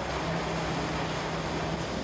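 Motorboat under way: a steady low engine hum under the hiss of rushing water and wind. The hum drops out near the end.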